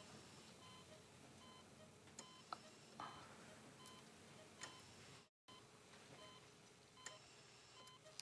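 Faint, evenly spaced electronic beeping of an operating-room patient monitor, with a few soft clicks.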